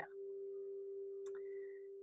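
A steady hum, a single held tone with faint overtones, fills a pause between sentences. Just over a second in comes a faint click, then a short high tone that fades out before the end.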